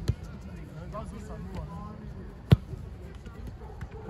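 A football being kicked on an artificial-turf pitch: a thud just after the start, then a louder, sharper kick about two and a half seconds in.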